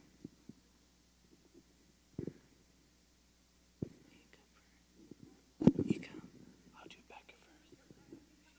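Mostly quiet large room with a few dull thumps, the loudest about six seconds in, and faint low murmuring.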